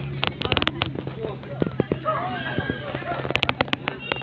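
Crowd of volleyball spectators talking and calling out. Two quick runs of sharp cracks stand out over them, one just after the start and one near the end.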